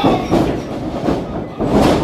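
Wrestlers crashing onto the canvas and boards of a wrestling ring: a run of heavy thuds, the loudest near the end as one wrestler is taken down to the mat.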